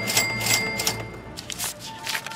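Cartoon sound effect of quick mechanical clicks, about five a second, thinning out about a second in, over background music.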